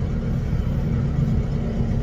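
Tractor engine running with a steady low drone, heard from inside the cab.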